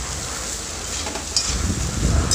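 A spoon stirring and scraping soaked poha (flattened rice) in a metal cooking pan on the heat, over a low sizzle, with a few light scrapes against the pan about halfway through.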